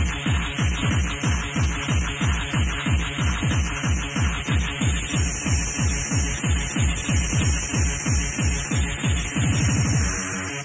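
Fast electronic rave dance music from a DJ mix, driven by a kick drum at about three beats a second. Near the end the beats run together into a quicker roll.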